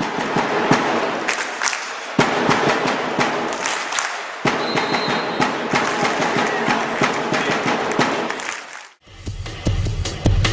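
Loud drumming over dense crowd-like noise and clapping, a busy rush of sharp beats with no clear melody, cutting off about nine seconds in.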